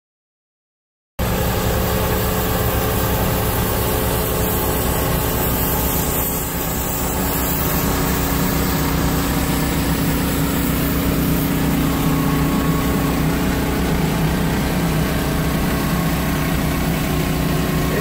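Starting suddenly about a second in, an engine runs steadily together with a continuous hiss as the band-steam applicator injects steam into the soil.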